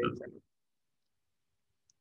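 A man's voice trails off in the first half second, then near silence with one faint computer-keyboard keystroke click near the end.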